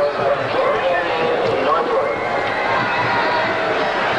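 Football stadium crowd: a steady din of many voices, without a break.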